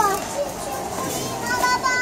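A young child's voice making short, high vocal sounds over steady background noise.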